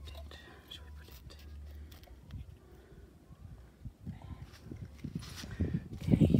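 Faint whispering and low voices over a low rumble and soft rustling, louder in the last second.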